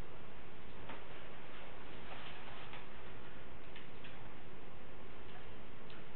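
Room tone of a small quiet room: a steady hiss and low hum, with a few faint, irregularly spaced clicks.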